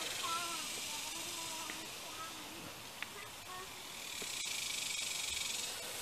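Faint outdoor background: a distant wavering voice in the first couple of seconds, a single tick about halfway through, then a high steady buzzing hiss that swells over the last two seconds.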